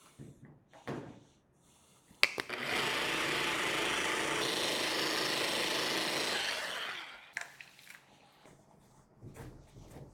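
A FLEX machine polisher with a foam pad switching on with a click about two seconds in and running steadily at low speed for about four and a half seconds, working scratch-removing compound into car paint, then winding down. Faint handling and towel-wiping sounds before and after.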